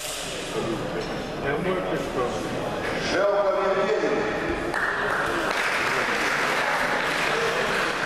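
Audience applauding in a large hall. Voices are heard at first, and steady clapping breaks out about five seconds in and keeps going.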